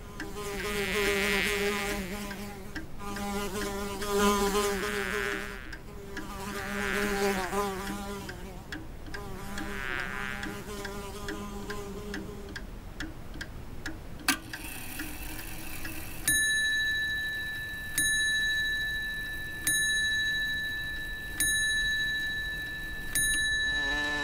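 Fly buzzing, its pitch wavering and its loudness swelling and fading as it flies about, for about the first thirteen seconds. After that comes a high ringing ding, struck five times, about every second and a half.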